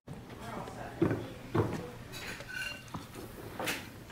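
Crockery and cutlery at a dinner table: plates set down and forks on plates giving a few sharp clinks and knocks.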